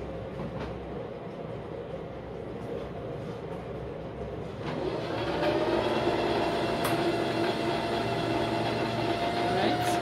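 Singer 1507 electric sewing machine's motor driving the bobbin winder. It runs up to speed about halfway through and then holds a steady whine as thread winds onto the bobbin.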